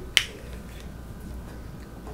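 A single sharp click just after the start, then steady low room hum.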